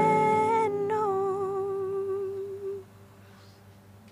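A singer's voice holding the last notes of a song: a short held note, then a long one that fades out near three seconds in.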